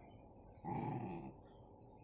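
A dog's short, low growl, starting about half a second in and lasting well under a second: a snarl of warning at a puppy beside it.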